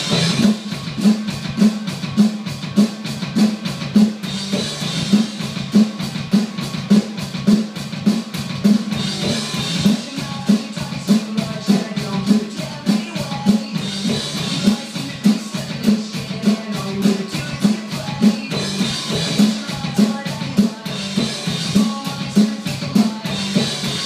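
Pearl drum kit played in a steady, driving rock beat, with kick and snare strokes repeating evenly. A brighter cymbal wash comes back about every five seconds.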